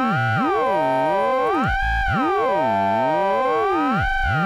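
Fonitronik MH31 VC Modulator ring-modulating a sine-wave carrier with a triangle-wave modulator: a steady tone under inharmonic, bell-like sidebands. The sidebands glide up and down and cross each other about twice as the modulator's coarse tuning is swept.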